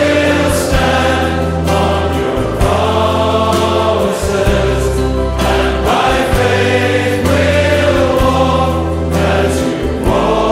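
A Christian worship song with a choir singing over long held bass notes.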